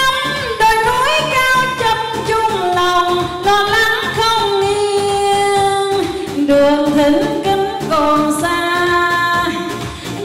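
A woman singing a song into a microphone over keyboard accompaniment, holding some long notes.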